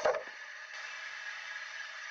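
Animated ice doors slamming shut as a sound effect: one sudden heavy impact with a short ring, then a steady hiss that cuts off abruptly.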